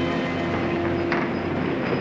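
Mine rail car running on its track: a steady rumble and rattle, with a held low tone that stops about a second in.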